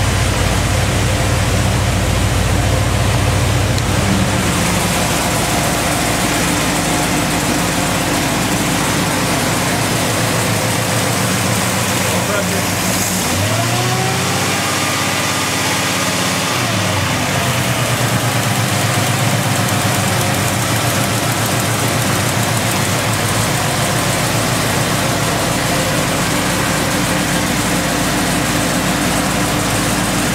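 Big-block Chevrolet V8 on an engine dyno idling at about 850 rpm. About thirteen seconds in it revs up briefly and falls back to idle.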